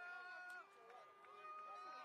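Faint, distant shouted calls from players on a rugby pitch: a few drawn-out voices heard at a low level.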